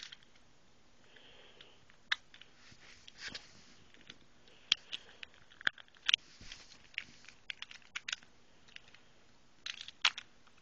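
Irregular small clicks and snaps of metal and plastic Beyblade parts being fitted and twisted together, about twenty in all, some sharp and loud.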